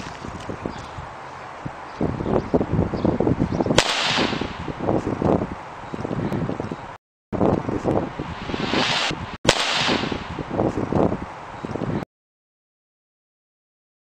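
Small rocket motor on a homemade toy car burning: dense crackling and fizzing starting about two seconds in, with louder hissing surges twice, until the sound cuts off abruptly near the end.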